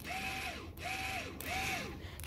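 Renault Grand Scénic Mk3 electronic parking brake caliper motor, run straight off a 12 V battery, driving the rear caliper in to apply the parking brake. It makes a mechanical whirr that swells and dips about every two-thirds of a second.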